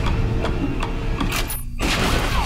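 Film trailer soundtrack: a dense low rumble of music and sound design with a few sharp hits, its upper range briefly dropping away about a second and a half in.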